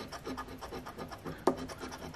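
A coin scratching the coating off a scratch-off lottery ticket in a quick run of short, rapid strokes, with one louder stroke near the end.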